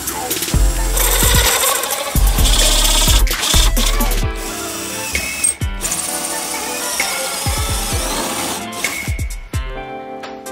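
Background music with a beat and deep bass notes, mixed with a cordless drill running a hole saw through a PVC sheet.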